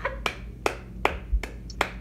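A series of about five sharp snaps or clicks, a little under half a second apart, with a dull low thump among them.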